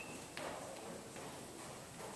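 Hoofbeats of a Thoroughbred gelding under saddle on the dirt footing of an indoor arena: a few soft, irregular thuds, about two or three a second.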